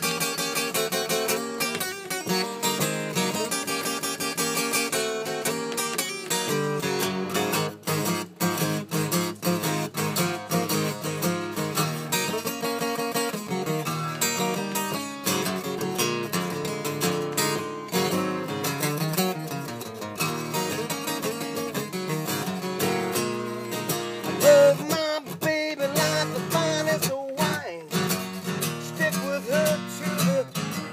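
Ovation acoustic guitar playing a blues instrumental passage, with picked and strummed notes running on continuously and no singing.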